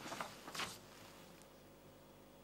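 Near silence between stretches of narration, with two faint short sounds in the first second.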